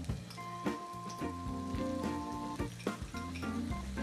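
Squid sizzling as it slides into a hot pan of sautéing garlic and onion, with a few light clicks of the spatula, under steady background music.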